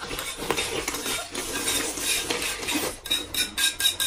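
Close-miked eating: noodles slurped and chewed off a plate, with chopsticks clicking against the dishes. The clicking gets quicker near the end.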